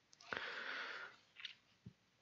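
A man at a lectern sniffing: a soft intake through the nose lasting about a second, then a shorter second sniff.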